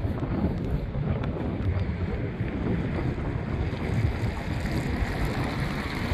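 Wind buffeting the microphone outdoors, a steady low rumbling noise.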